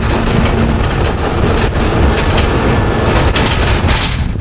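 1993 Orion V transit bus under way, heard from inside: its Detroit Diesel 6V92 two-stroke V6 diesel runs steadily under the clatter of body rattles and road noise.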